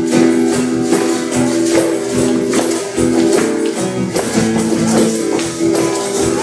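Acoustic guitar strumming held chords, accompanied by a steady rhythmic hand-percussion beat.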